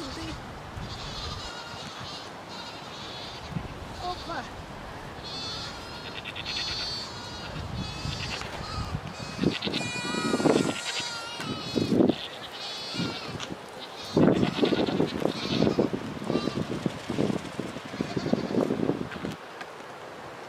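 Goats bleating repeatedly, a run of quavering calls that grow louder about halfway through and again in the last few seconds.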